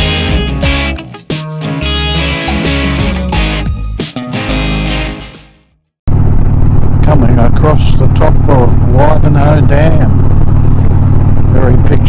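Rock music with electric guitar that fades out about five seconds in. After a sudden cut, a loud, steady drone of a motorcycle at road speed with wind noise, a man's voice talking over it.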